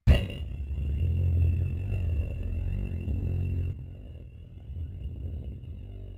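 Cartoon explosion sound effect: a sudden bang, then a deep rumble with a thin, steady high ringing tone over it. The rumble drops off about four seconds in and fades away.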